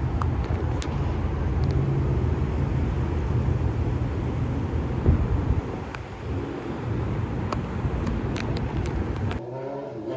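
Wind buffeting a phone microphone outdoors: a loud, steady low rumble with a few light clicks, which cuts off suddenly near the end.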